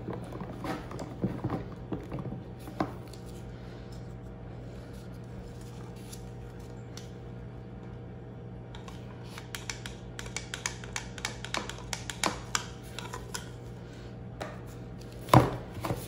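Small wire whisk stirring mica into soap batter in a plastic pouring pitcher: quick light ticks of the wires against the plastic for the first few seconds, a quieter pause, then more rapid ticking from about nine seconds in, and a louder clack near the end. A faint steady hum runs underneath.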